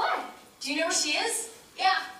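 Young actors' voices on stage in three short bursts of dialogue or vocal noises.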